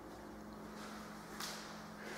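Quiet room tone in an empty room: a faint steady hum, with one brief soft noise about one and a half seconds in.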